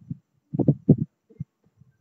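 A few short, soft low thuds at irregular intervals, the loudest cluster just under a second in.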